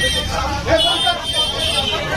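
Crowd of several voices talking and calling out over one another in a jostling press scrum, over a steady low rumble.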